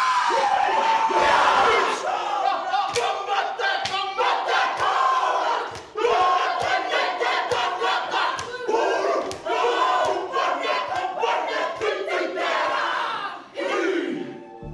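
Māori haka pōwhiri: a group of performers chanting and shouting in unison, loud and forceful, punctuated by sharp percussive beats at a steady rhythm.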